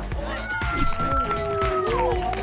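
Several people shrieking with excitement as bowling pins go down, long high-pitched screams held for over a second, over background music.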